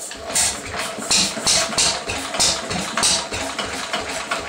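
1937 Lister D 2 hp single-cylinder stationary engine running roughly, its low firing beat broken by sharp, irregular pops every third to half second. These are the backfires of an engine left unstarted for many years, which the owner wonders may be down to its timing.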